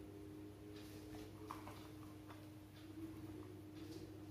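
Faint room tone with a steady low hum and a few light, scattered taps and clicks from hands handling small glass bowls and strips of litmus paper on a table.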